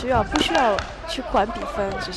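Voices speaking or calling out over the arena, with a few impact thuds mixed in.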